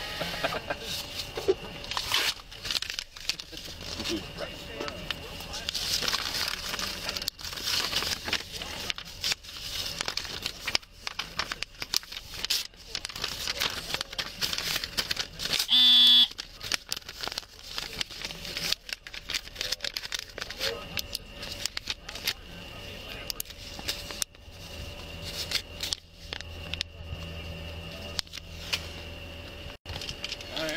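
Crackling and rustling on a police body-worn camera's microphone, with many short clicks throughout, and a brief loud pitched sound about sixteen seconds in.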